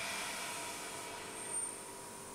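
Faint steady hum and hiss of running laboratory equipment, with a brief thin high tone about one and a half seconds in.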